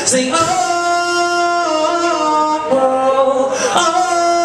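A man singing live into a handheld microphone, in long held notes that step to a new pitch every second or so.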